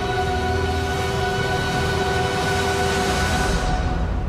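Film trailer music at its close: a sustained chord held steady under a swelling rush of noise, which dies away shortly before the end.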